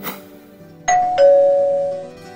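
Intro jingle: a short whoosh, then a two-note ding-dong chime, the second note lower and ringing on, over light plucked-string background music.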